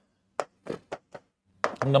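Four short taps of a pen or stylus on an interactive display screen while a heading is written on it, spread over a little more than a second.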